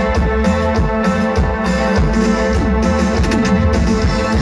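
Live band playing an instrumental passage with no vocals: sustained keyboards and electric guitar over drums keeping a steady beat.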